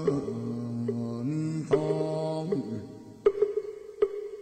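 A Buddhist chant sung by a low male voice in long held notes, over two phrases. A sharp struck percussion beat opens the second phrase. The voice stops a little before three seconds in, and then a single strike comes, followed by a few quick lighter taps.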